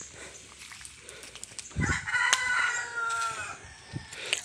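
A rooster crowing once, a single call of about a second and a half that starts about two seconds in.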